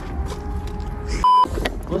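A brief, loud 1 kHz bleep, a single steady tone, a bit more than a second in. It replaces the sound under it, typical of a censor bleep dubbed over a word. Around it is a low outdoor rumble.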